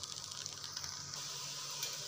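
Chopped vegetables sizzling quietly in a frying pan, a steady soft hiss.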